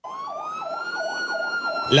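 Police car siren wailing: one long tone rising slowly and then starting to fall, with a faster warbling tone beneath it, about three warbles a second.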